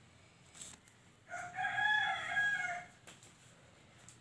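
A rooster crowing once, starting a little over a second in and lasting about a second and a half.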